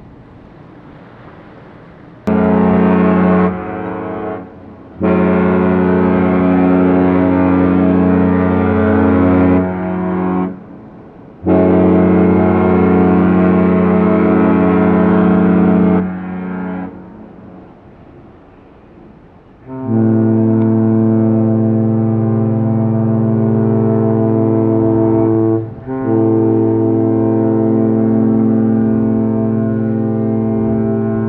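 Cruise ship horns exchanging long deep blasts: three long blasts in the first half, then, from about twenty seconds in, a horn of a different pitch answers with two long blasts that have a brief break between them.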